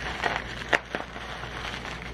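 Clear plastic wrapping crinkling and crackling as it is pulled off a small glass spray bottle, with one sharp click about three-quarters of a second in.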